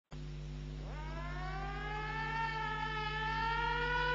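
Air-raid siren winding up as the intro of a heavy metal demo track: one rising tone that climbs quickly, then levels off and keeps getting louder, over a steady low hum.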